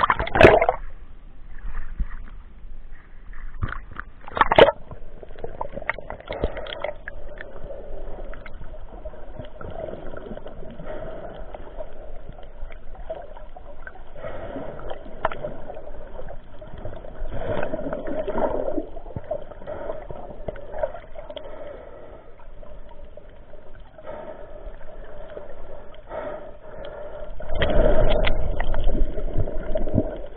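Water sloshing and gurgling around a camera at the sea surface during snorkeling. Two sharp splashes come near the start and about four seconds in, and a louder surge of water noise builds near the end.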